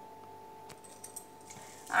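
Hands kneading wheat-flour dough in a stainless steel bowl: quiet, with a few faint clinks and taps in the second half, over a steady faint hum.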